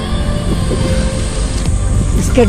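Steady rush of wind on an action camera's microphone with inline skate wheels rolling on asphalt, strongest as a low rumble.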